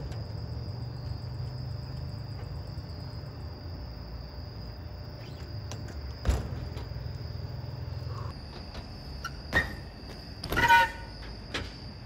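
A BMX bike comes down a skate ramp and lands with one sharp knock about six seconds in. Under it runs a steady low rumble that stops about eight seconds in, and a thin high steady tone runs throughout.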